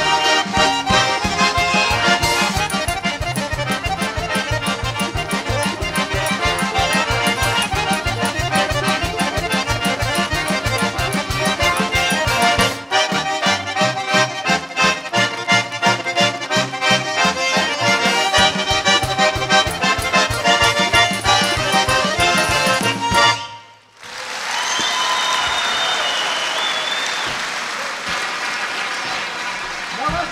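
Accordion played fast and virtuosically, a quick melody over a steady pulsing bass-and-chord accompaniment, ending with a final chord about 23 seconds in. Applause follows, with a few whistles.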